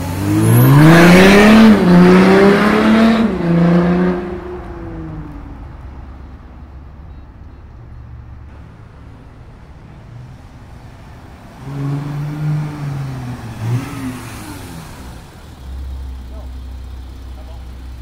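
Volkswagen Amarok 3.0 V6 turbodiesel with a stage 2 remap and a straight-through 4-inch downpipe exhaust accelerating hard. Its pitch climbs with a break about two seconds in, then the sound fades as the truck pulls away. The engine is heard again, quieter, from about twelve seconds in, and a low exhaust rumble is heard near the end.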